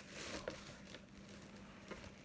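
Faint rustling and crinkling of plastic packaging and clothing being handled, with a few soft crinkles in the first half second and again near the end, over a faint steady hum.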